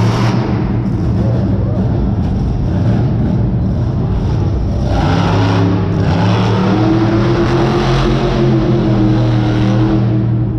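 Monster truck's supercharged V8 engine running loud. It revs up about five seconds in and then holds a higher, steady pitch.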